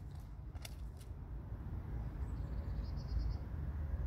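Wind rumbling on the microphone, with a few faint clicks in the first second and a brief run of faint high chirps about three seconds in.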